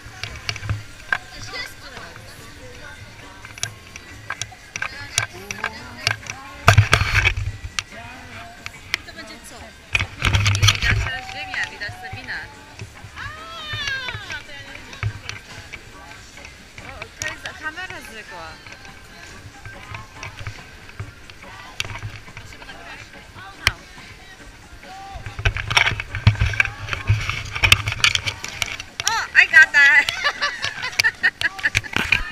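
Ice skates scraping and gliding on rink ice, with scattered clicks and knocks, in three noisier stretches, the longest near the end. Background music and a few voices are heard.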